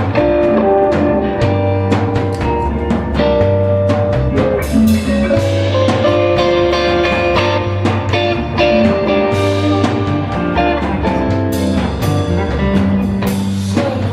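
Live heavy electric blues-rock band playing: an electric guitar lead of held and bending notes over bass guitar and a drum kit with cymbal crashes.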